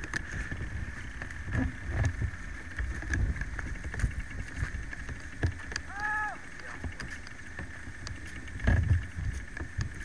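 Low irregular rumbling and knocks from handling and movement on the camcorder microphone, with one short rising-then-falling call about six seconds in.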